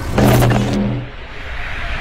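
Sound effects for an animated channel-logo intro: a loud, low, engine-like burst starting just after the beginning and lasting under a second, then easing off into a quieter rushing sound that builds again toward the end.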